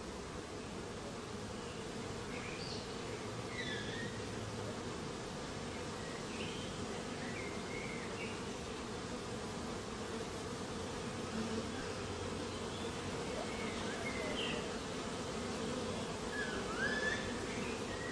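Steady hum of a mass of honey bees buzzing, with faint short high chirps now and then.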